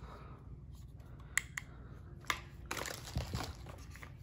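Cardboard packaging and plastic doorbell parts being handled and set down, light rustling broken by a few sharp clicks and taps in the middle of the stretch.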